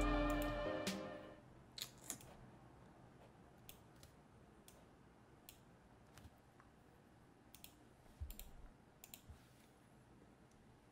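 A guitar music loop fades out over the first second, leaving a quiet room. About a dozen short, sharp computer-mouse clicks follow at irregular intervals.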